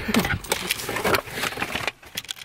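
Rustling and irregular clicks and knocks from a handheld camera being handled close against clothing, after the tail of a laugh at the start. It cuts off suddenly near the end.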